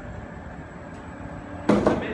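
A metal-legged chair set down on a concrete floor with a short, loud clatter near the end, over a steady low background hum.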